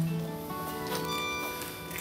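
Accordion holding sustained chords that change twice, with light acoustic guitar strokes: the instrumental introduction to a Catholic hymn, before the singing comes in.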